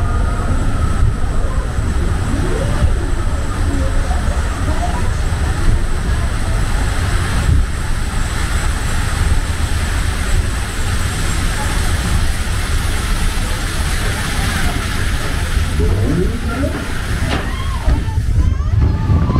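Log flume boat hauled up the final lift hill by its conveyor chain: a steady low mechanical rumble with running water. Faint voices come through about three seconds in and again near the end.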